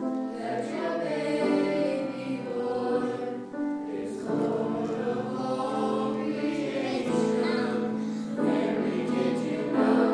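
A small choir of children and two adults singing together in sustained notes, with short breaks between phrases.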